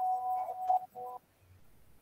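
A woman's voice holding a steady closed-mouth hum, broken just before a second in by a second, shorter hum; after that only faint room noise.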